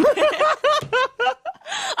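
A man and a woman laughing together, in quick repeated ha-ha pulses about six a second, loosening toward the end.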